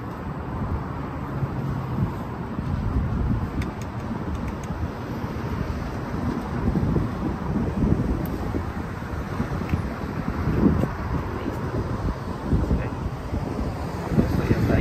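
Wind buffeting the microphone outdoors, a low, rumbling noise that rises and falls in gusts, with a few faint clicks near the middle.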